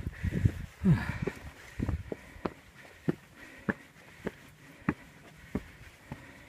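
Footsteps climbing a path of rough stone steps, a steady tread of short knocks at about one and a half steps a second.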